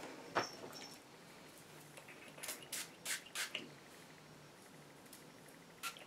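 Small pump spray bottle of wig fixing spray being spritzed onto hair: a sharp click near the start, then a quick run of about five short hissy spritzes in the middle and one more near the end.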